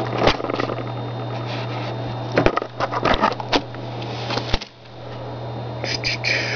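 Plastic clicks and light rattling as the keyboard of a 2002 iBook G3 is unlatched and flipped up off the laptop, with a handful of sharp clicks spread through, over a steady low hum.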